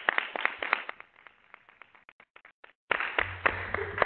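Scattered applause from a small audience, separate hand claps that thin out and die away after a few seconds, followed near the end by a sudden louder rustle.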